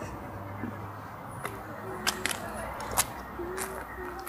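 Outdoor ambience on a phone microphone: a steady low rumble, with several sharp clicks spread through it and a few faint, brief low tones.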